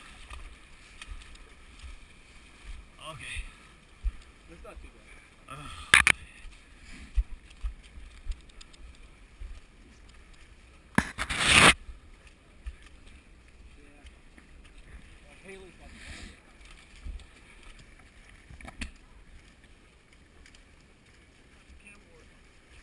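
Footsteps splashing and sloshing through a shallow, muddy creek, in short irregular bursts, with one louder splash about eleven seconds in.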